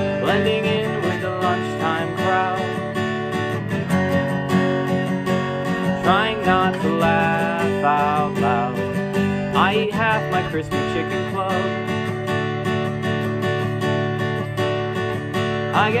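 Taylor acoustic guitar strummed in a steady folk accompaniment, with a man's singing voice over it in places.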